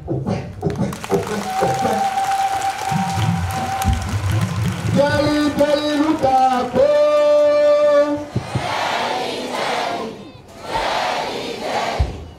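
Crowd singing and chanting. A lead voice holds long, steady notes in the middle, and a mass of crowd voices follows.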